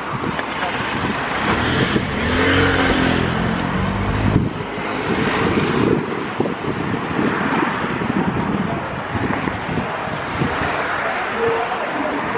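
Street traffic noise, with a motor vehicle's engine passing and rising slightly in pitch from about two seconds in, cutting off just after four seconds.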